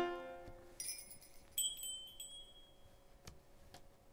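Piano notes dying away, then high, bell-like chime strikes about one and one and a half seconds in that ring on for a second or so. A single sharp click a little past three seconds.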